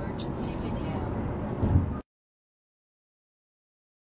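Steady road and engine noise inside a moving car, picked up by a dashcam, with the end of the dashcam's automated voice prompt for an emergency recording just at the start. A brief low bump comes just before the sound cuts off abruptly about halfway through, leaving dead silence.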